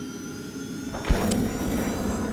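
Intro logo sound effects: a steady whooshing wash with a sharp low hit about a second in.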